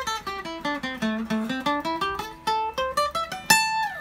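Acoustic guitar playing a scale pattern note by note, the single picked notes stepping down in pitch and then climbing back up, closed by a louder strummed chord about three and a half seconds in.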